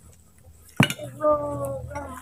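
A single sharp click or clink about a second in, followed by a child's drawn-out voice.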